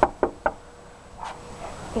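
A hand knocking three times in quick succession on a white uPVC front door.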